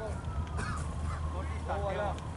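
Steady low rumble on the microphone, typical of wind on an outdoor field, with a few short distant calls about half a second in and near the end.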